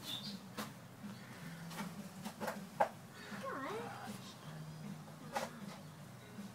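Quiet handling noise from a handheld mobile phone: a few faint clicks and knocks over a low steady hum, with a brief faint voice-like sound about three and a half seconds in.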